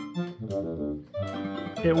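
Williams Cyclone pinball machine playing its game music through its speaker in the music test: a tune in short held notes that breaks off about a second in, and another track starts.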